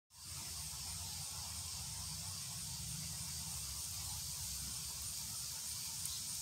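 Steady outdoor background: an even high-pitched hiss over a low rumble, with no distinct events.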